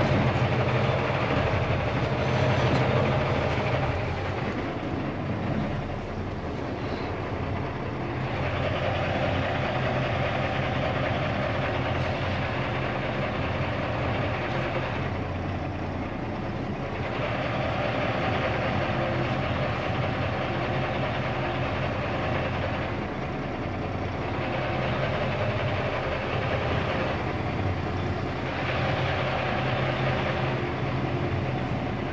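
Tractor-trailer's diesel engine running, heard from inside the cab while the truck moves at low speed. Its sound swells and eases every few seconds as the driver works the throttle.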